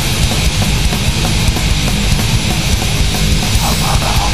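Crust punk recording: loud, distorted guitars and bass over fast, pounding drums, dense and unbroken.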